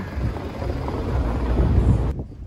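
An Audi car moving slowly past at close range, its engine and tyres on cobblestones making a low rumble that grows louder toward the end.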